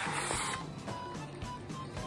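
A loud, noisy slurp lasting about half a second at the start as rice is shoveled from the bowl's rim into the mouth with chopsticks, then chewing under steady background music.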